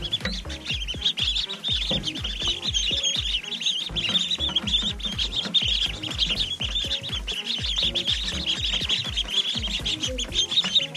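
A flock of khaki Campbell ducklings peeping constantly while they drink from the holes of a bucket waterer, with soft low thumps scattered among the peeps.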